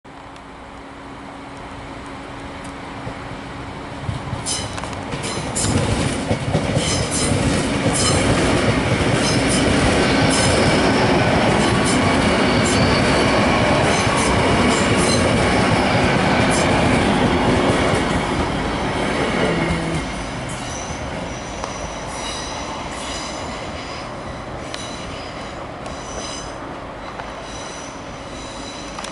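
GWR Class 800 bi-mode IET passenger train passing over a level crossing at speed: a rising rumble as it approaches, then loud wheel-on-rail noise with sharp clicks as the wheels cross the rail joints. The sound drops off suddenly about twenty seconds in as the last coach clears the crossing, then fades as the train moves away.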